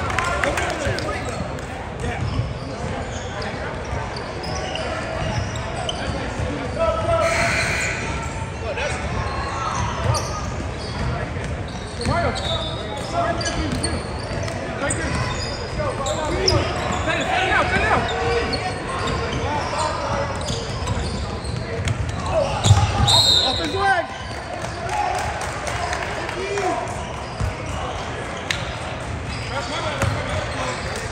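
A basketball bouncing on a hardwood gym floor during a game, with players and spectators talking throughout.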